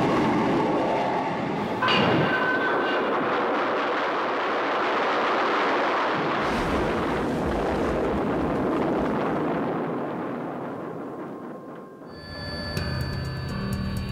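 A steady, loud rushing noise that breaks off and restarts abruptly about two seconds in, then fades away, and music with held tones comes in near the end.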